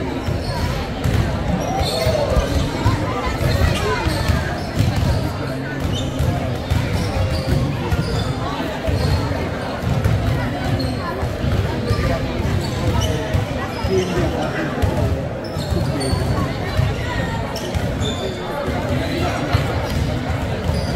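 Several basketballs being dribbled at once on a wooden gym floor, a steady, irregular patter of overlapping bounces in a large sports hall, with voices in the background.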